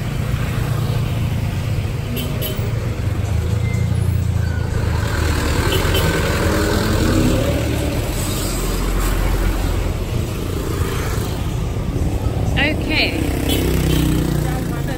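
Motor scooter engines running in close street traffic, a steady low drone.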